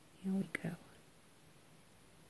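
A woman's short wordless murmur, about half a second long, with a small click in the middle of it; otherwise quiet room tone.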